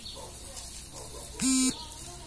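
A single short electronic buzzer tone, about a third of a second long, about one and a half seconds in.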